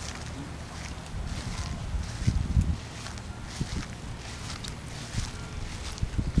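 Lawn mowers running in the distance, a steady low drone, with wind gusting on the microphone and footsteps on grass.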